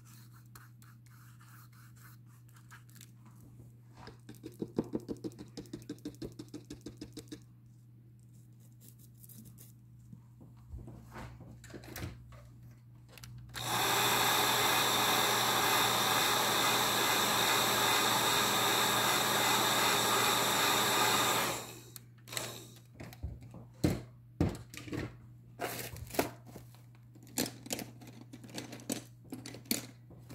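Craft heat gun blowing steadily for about eight seconds in the middle, drying the freshly brushed-on medium on a collage page. Earlier, a short run of quick, even brush strokes; near the end, light taps and knocks of small tools on the table.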